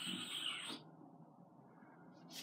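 A short, breathy falling whistle through pursed lips, fading out under a second in, then quiet room tone.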